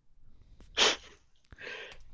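A man's short, loud burst of breath, like a sneeze or an explosive laughing exhale, just before the one-second mark, followed by softer breathy sound.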